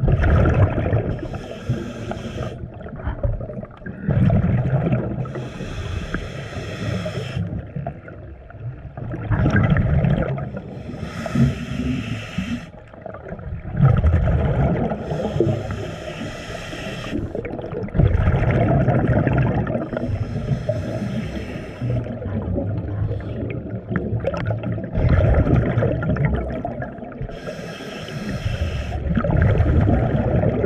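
A scuba diver breathing through a regulator underwater: a hissing inhalation every four to five seconds, alternating with low, gurgling rushes of exhaled bubbles.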